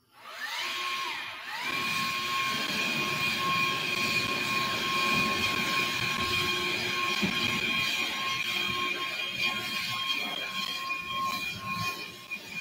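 A motor spinning up with a rising whine, dipping and spinning up again about a second and a half in, then running steadily with a high whine over a rumble.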